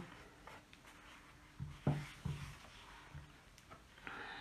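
Soft handling sounds of hands pressing rolled fondant down onto a cake, with a few brief low thuds around the middle, over quiet room tone.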